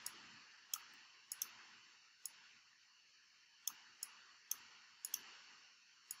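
Computer mouse buttons clicking: about nine faint, sharp clicks at irregular intervals, two of them in quick pairs, over a faint steady hiss.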